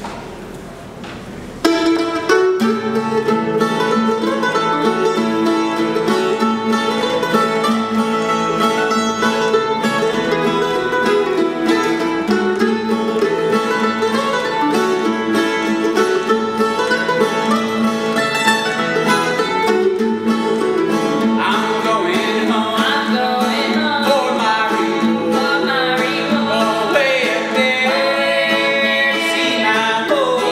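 Mandolin and acoustic guitar strike up a gospel tune about two seconds in and play an instrumental introduction. A man's and a woman's voices come in singing over the strings about two-thirds of the way through.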